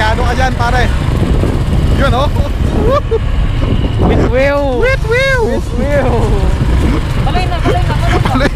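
Motorcycles on the move, a steady low rumble of engines and wind. Voices call out over it in drawn-out shouts, loudest in the middle.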